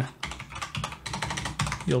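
Typing on a computer keyboard: a quick run of keystrokes as a command is entered at a Python prompt.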